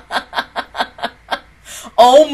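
A woman laughing close to the microphone: a run of short, breathy laugh pulses, about five a second, that fades out after about a second and a half, then a short breath near the end.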